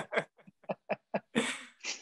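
Men laughing: a run of short, quick laughs, a few a second, fading, then a breathy exhale near the end.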